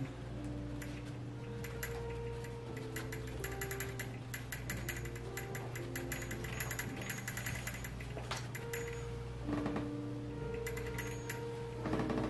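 Soft background music of long held notes over a low steady hum, with faint quick ticks of a paintbrush dabbing paint onto a canvas.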